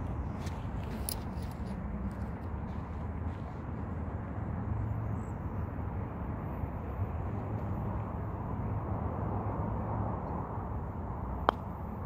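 Steady low outdoor background rumble, then near the end a single sharp click of a putter striking a black Volvik Vivid golf ball on a putt.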